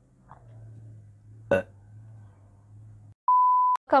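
A low steady hum with a single short sharp sound about a second and a half in; then the sound cuts out and a half-second electronic beep at one steady pitch follows near the end.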